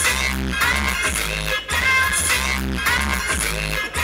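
A DJ set of dance music played loud through a large PA speaker system, with a heavy bass beat. The sound cuts out briefly about one and a half seconds in and again near the end.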